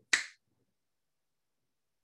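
A single finger snap just after the start, given as a hypnotic anchor cue for a calm, neutral state.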